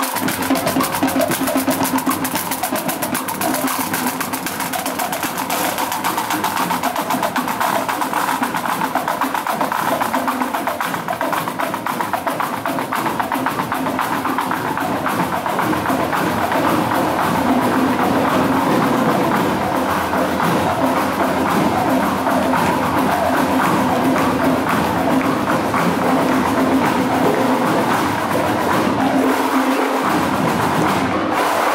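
Scout pipe-and-drum band playing on the march: fast, continuous marching-drum beats over steady, held bagpipe tones.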